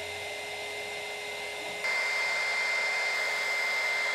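Small handheld heat gun running: a steady fan-motor whine over a rush of hot air, which steps up louder about two seconds in. It is shrinking heat-shrink tubing over a crimped copper cable lug.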